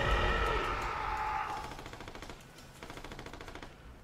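A film soundtrack's held musical drone fades out, then a faint, rapid rattle of automatic rifle fire runs for about a second and a half before stopping just before the end.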